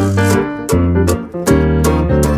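Instrumental swing-style band music with keyboard to the fore over low bass notes and sharp hits on a steady beat.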